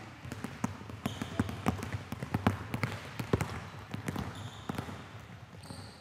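Basketballs bouncing on a hardwood gym floor, an irregular run of dribbles, several bounces a second.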